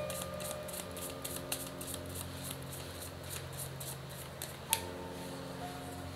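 A deck of tarot cards being shuffled by hand: a quick, steady run of soft card flicks and clicks, with one sharper click near the end.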